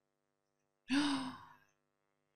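A woman's single breathy sigh with a slightly falling pitch, about a second in, lasting about half a second.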